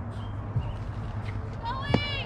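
Voices talking in the background over a steady low hum, with a sharp knock and a voice calling out near the end.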